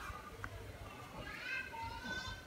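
Children's voices in the background over a low outdoor rumble, with a high rising call near the end.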